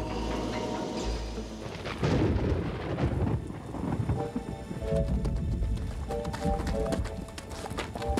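Cartoon soundtrack: a dramatic music score over storm sound effects, opening with a low thunder rumble, with horse hoofbeats clip-clopping from about two seconds in.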